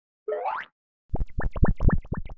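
Animated logo sound effect: a short rising whoop, then a rapid run of bubbly plops, each sweeping up in pitch, matching bubbles rising from a cartoon flask.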